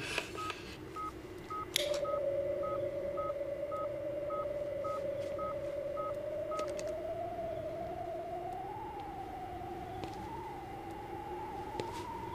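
Handheld radio bug detector with a whip antenna: short electronic pips about two a second that stop about six and a half seconds in, and from about two seconds in a steady electronic tone that slowly rises in pitch with a wobble as the detector is swept toward a hidden transmitter.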